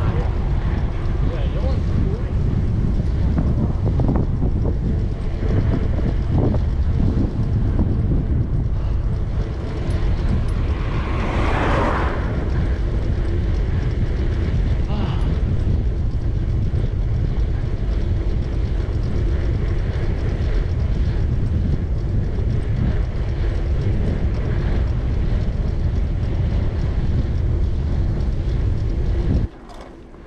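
Wind buffeting the microphone of a bicycle-mounted camera while riding downhill at speed, a steady heavy rumble with a louder rush about twelve seconds in. The sound cuts off abruptly shortly before the end.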